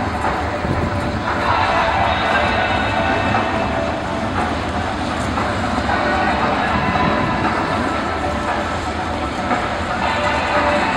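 A pack of BriSCA F2 stock cars running together on the track: many engines blending into one steady, unbroken sound.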